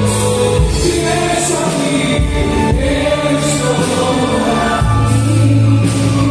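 Gospel worship song: a group of voices singing over electronic keyboard accompaniment, with held bass notes.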